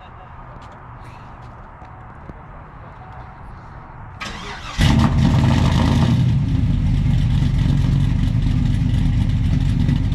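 A Chevrolet Silverado's 402-cubic-inch stroker V8 with an aftermarket cam cranks briefly about four seconds in, catches, and settles into a loud, steady idle. Before it starts there is only a faint steady hum.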